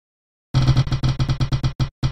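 Spinning prize-wheel sound effect: a fast run of clicking ticks starts about half a second in and slows as the wheel winds down.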